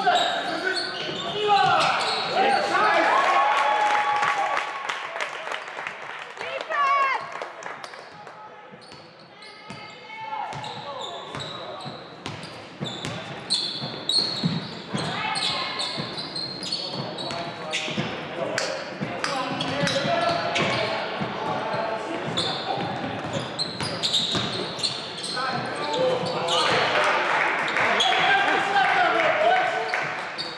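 Basketball game on a hardwood gym court: the ball bouncing, sneakers squeaking, and players and the bench shouting, echoing in the hall.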